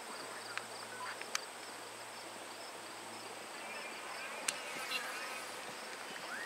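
Insects calling steadily, a high pulsing buzz, with a few sharp clicks scattered through and faint distant voices in the second half.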